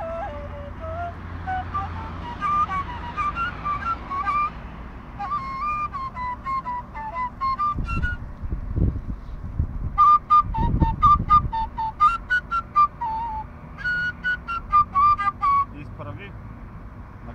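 Kaval, the Bulgarian end-blown flute, played solo: an ornamented melody that starts low and climbs into higher phrases, the later phrases in short, clipped notes. Two brief low rumbles break in near the middle.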